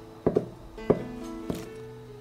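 Kitchen knife chopping soaked wood ear mushroom on a cutting board: four short sharp strokes, the first two close together, over background guitar music.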